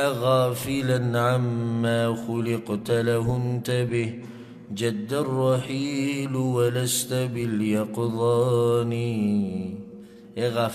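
A man chanting Arabic verse in a slow, melodic voice, drawing out long wavering notes with brief pauses between phrases.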